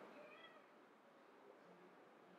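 Near silence: room tone in a pause between speech, with a faint, brief high-pitched sound in the first half-second.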